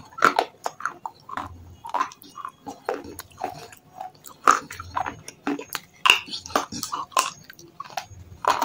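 Close-miked biting and chewing of thin slabs of red shale stone: a quick, uneven series of sharp cracks and crunches in the mouth.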